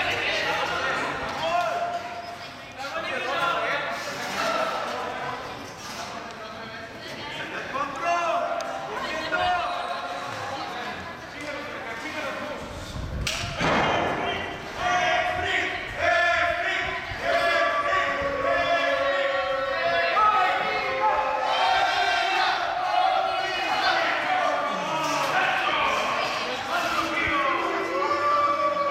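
People talking, with one loud thud about halfway through.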